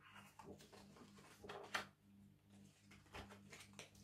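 Near silence: room tone with a steady low hum and a few faint, soft clicks.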